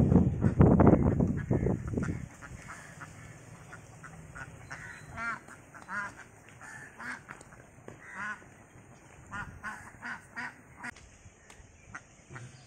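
A flock of domestic ducks quacking, with a loud rush of noise over the first two seconds, then single quacks, some doubled, scattered through the rest.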